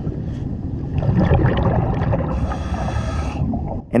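Scuba diver breathing through a regulator, heard on an underwater camera: a low bubbling rush, with a brighter hiss lasting about a second near the end.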